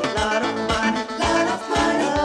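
1980s funk track playing: a steady drum beat under plucked guitar lines and held keyboard tones, with no vocals at this moment.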